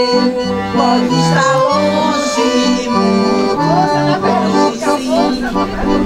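Scandalli piano accordion playing a lively tune with a stepping bass-and-chord accompaniment, while several women's voices sing along into a microphone.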